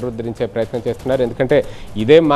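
A man's voice speaking: news-report narration only.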